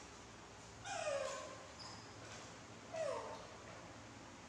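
Baby macaque giving two short calls that fall in pitch, about two seconds apart. These are complaining calls from a young monkey waiting impatiently to be fed.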